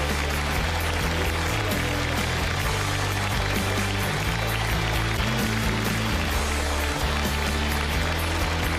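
Talk-show closing theme music with a steady bass line.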